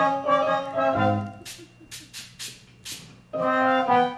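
Stage-musical band playing an instrumental dance section, brass-led held chords at the start and again near the end, with a run of short sharp percussive hits, about three a second, in between.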